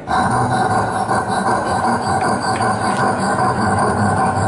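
A mimic's vocal imitation of a running vehicle, made with cupped hands over his mouth at a microphone: one steady, unbroken noise without words that starts abruptly.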